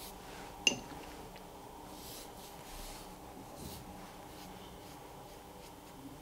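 Faint brushing of a large wet watercolour brush over paper as the sheet is dampened for wet-on-wet painting, with one light click about two-thirds of a second in.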